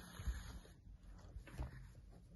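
Faint handling sounds of hand-sewing a stuffed chenille crochet toy: a soft rustle as the yarn is drawn through the fabric, then two soft bumps from the toy being handled.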